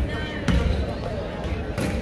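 A basketball dribbled on a hardwood gym floor, a couple of separate bounces, with voices in the gym behind.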